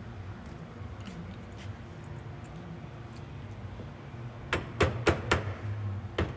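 Hammer striking a tubular fitting tool to drive the shaft assembly down to seat in an Atlas Copco MD dryer gearbox housing. A quick run of sharp knocks, about four a second, starts near the end.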